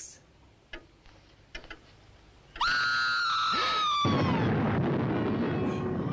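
A woman's shrill scream on a film soundtrack, starting suddenly and sliding slowly down in pitch over about two seconds. It gives way to a loud, steady rushing noise.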